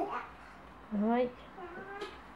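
A short wordless vocal sound rising in pitch about a second in, followed by a fainter one near the end.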